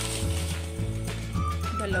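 Crinkling of a paper takeaway bag being handled, over background music with a repeating bass pattern and a melody of held notes.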